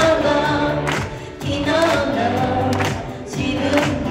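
Female idol vocal group singing together into microphones over a pop backing track with a steady beat.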